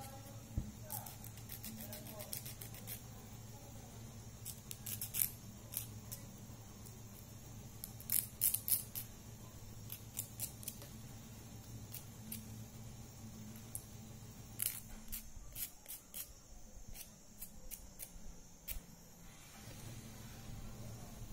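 A nail file scraping across the tips of natural fingernails in short, quick strokes, in several separate runs with pauses between them. The filing is squaring off the nail tips.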